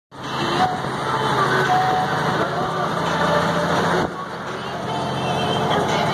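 Steady road and engine noise heard from inside the cab of a large vehicle cruising on a freeway, with a low drone. Faint voices come and go, and the noise dips briefly about two-thirds of the way in.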